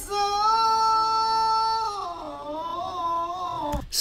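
A singer's voice played back from a cover video holds a long, steady high note for about two seconds, then slides down into a wavering run. Near the end a sharp click cuts it off as the playback is paused.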